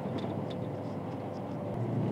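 Steady road and engine noise heard inside a vehicle cruising on a highway, with a faint steady whine that fades near the end.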